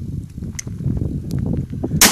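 Wind rumbling on the microphone with a few faint clicks.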